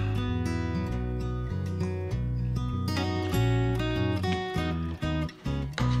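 Background music led by a strummed and plucked acoustic guitar over steady bass notes, dipping briefly about five seconds in.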